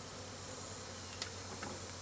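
Honeybee colony buzzing steadily around an opened wall cavity, with one short click about a second in.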